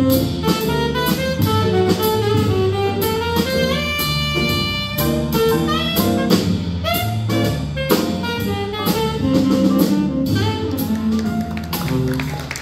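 A small jazz combo playing live: a tenor saxophone solos in quick running lines, holding one long note about four seconds in, over piano, electric bass and a drum kit keeping time on the cymbals.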